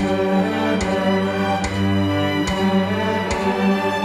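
Cello bowed in long sustained notes of a slow melody, with a short soft tick marking a steady beat about every 0.8 seconds.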